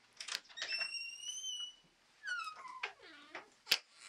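A door creaking open: a couple of clicks, a long high hinge squeak that rises slightly, then a shorter squeak falling in pitch, and one sharp click near the end.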